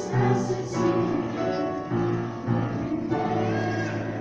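A mixed school choir of teenage voices singing, held notes changing every half second or so, accompanied by piano.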